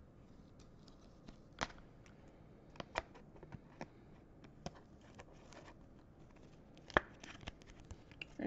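Quiet handling of thin plastic: a trading card being slid into a soft plastic sleeve and a rigid clear plastic top loader, with light crinkles, scrapes and a few small clicks, the sharpest one near the end.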